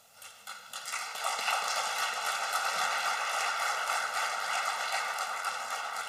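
Audience applause in a large hall, building over the first second and then holding steady.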